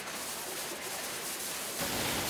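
Steady, even noise of recycling-plant sorting machinery and conveyors, with a deeper rumble joining near the end.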